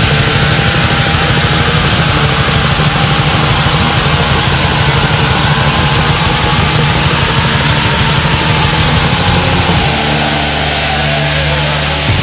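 Black metal recording: a dense, loud wall of distorted guitars and drums. About ten seconds in the cymbal-heavy top end drops back and the band shifts to a different part.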